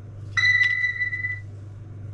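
Short electronic beep from wireless earbuds being taken out of their charging case: one steady high tone about a second long, starting a third of a second in, with a small plastic click partway through.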